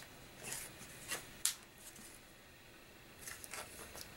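A few faint short clicks and scrapes of a glass 3D-printer build plate being handled while fingers pick at a black ABS print stuck to it.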